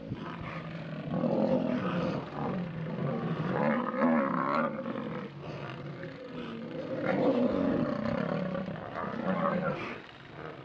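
Lionesses growling in several loud bouts, each a few seconds long.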